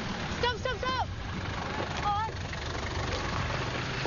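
London black cab's engine idling steadily, with brief snatches of voices about half a second in and again about two seconds in.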